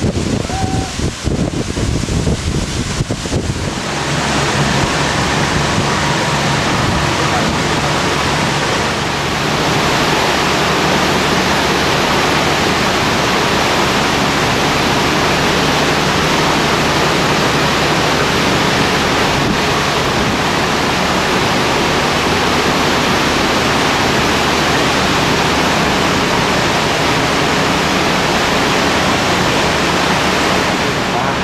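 Wind buffeting the microphone for the first few seconds, then a steady loud rush of water with a low engine hum beneath it, heard aboard a cruise boat on the fiord.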